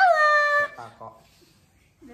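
A high-pitched, drawn-out vocal call from a person, rising and then held for about half a second, followed by a few soft syllables.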